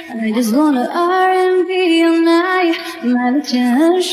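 A woman singing live into a microphone over backing music: long held notes joined by quick, smooth vocal runs.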